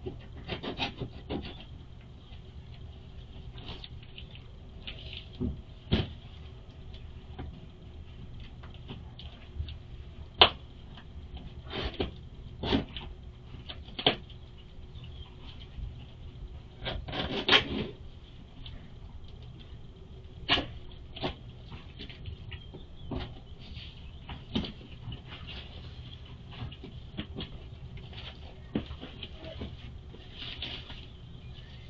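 Plastic mailer bags crinkling and cardboard boxes rustling, scraping and knocking as a stack of packages is handled, in irregular bursts with a few sharper knocks. Heard through a security camera's microphone.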